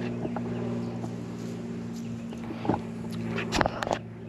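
A steady low mechanical hum, with a few sharp knocks and rustles near the end as a handheld camera is turned around.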